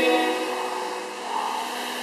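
Air rowing machine's fan flywheel whirring as it is pulled through a stroke, fading about a second in, with background music playing.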